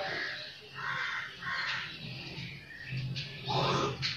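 A bird calling three times in quick succession in the first two seconds, over faint background music; a brief voice sound near the end.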